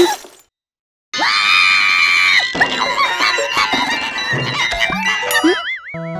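Cartoon sound effects: a short hit at the start, then after a moment of silence a long, loud cartoon scream, followed by a dense jumble of crashes and zany effects that ends in a wavering, up-and-down warble.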